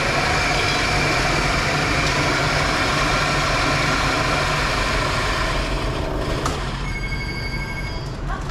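Electric shop coffee grinder with a large funnel hopper running steadily as it grinds coffee beans to powder, then stopping about six and a half seconds in. A faint high whine carries on near the end.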